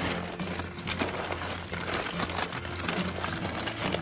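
Crumpled brown kraft packing paper being unfolded and shaken out by hand, crinkling and rustling in a dense run of irregular crackles.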